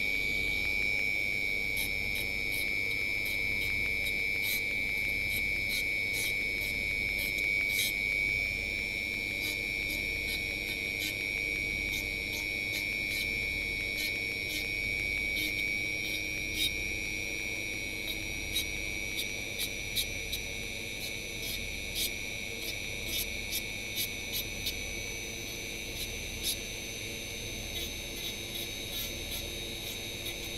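Handheld rotary tool running at speed with a steady high whine that creeps slightly up in pitch, its small bit carving XPS foam, with scattered light ticks throughout that come more often in the second half.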